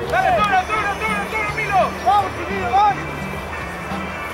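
A handful of short shouts from men's voices over music with a bass line that steps from note to note.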